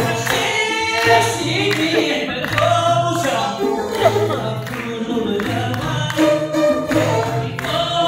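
Live Amazigh rrways music: a male singer on a microphone with a troupe of long-necked lutes, over a low pulse that recurs about once a second.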